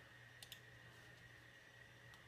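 Two faint clicks close together about half a second in, from a computer being clicked, over a low steady hum in a quiet room.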